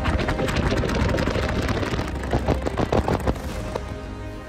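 Loud wind rushing and buffeting across a smartphone's microphone as the phone tumbles in free fall from 300 feet.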